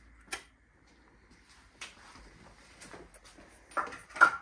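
A few light clicks and taps over quiet room tone, spaced about a second apart.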